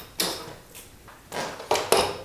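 Handling noise from a fat-tire e-bike front wheel with a hub motor being held and moved into place at the fork: a few short knocks and scuffs with gaps between them.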